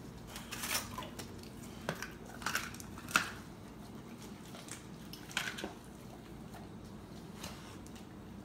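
A dog licking and mouthing raw turkey hearts in a clear plastic tray, making scattered wet smacks and clicks of the plastic tray. The loudest come about three seconds in and again about five and a half seconds in.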